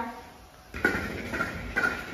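Batter sizzling on a hot tawa as an onion uthappam fries, setting in about a third of the way through as a steady hiss, with a short spoken word over it.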